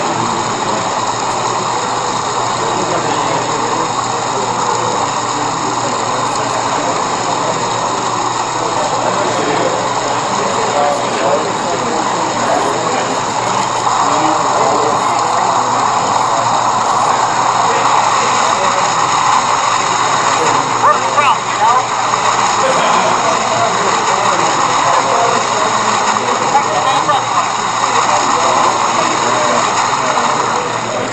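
Steady, indistinct chatter of many voices talking at once in a crowded hall.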